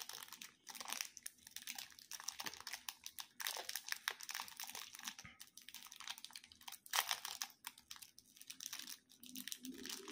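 A clear plastic candy wrapper crinkling as fingers peel it open, a steady run of irregular crackles with one sharper crackle about seven seconds in.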